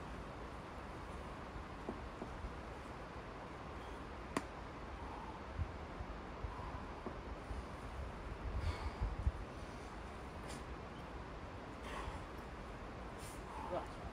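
Quiet outdoor ambience: low wind rumble on the microphone, with a few faint sharp clicks and some low bumps a little past the middle.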